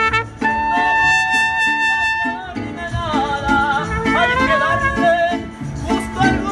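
Mariachi band playing live at close range: strummed guitars keep a steady rhythm under singing, with one long held high note in the first couple of seconds before the melody moves on.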